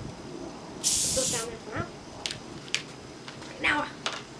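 Carbonation gas hissing out of a plastic Coca-Cola bottle as its cap is unscrewed: one short hiss, about half a second long, about a second in.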